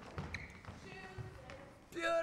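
Faint voices echoing in a large gym, with a few soft thuds of footsteps on the wooden floor.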